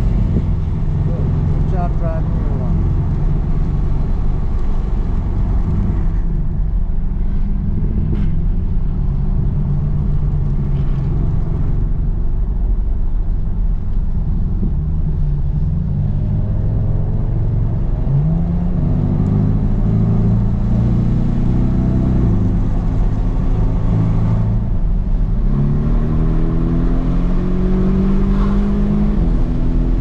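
Porsche 718 GTS engine heard from inside the cabin while driving on a wet track, over a steady rumble of tyre and road noise. Its note runs fairly steady for the first half, then climbs in pitch from a little past halfway, breaks off briefly, and climbs again near the end as the car accelerates through the gears.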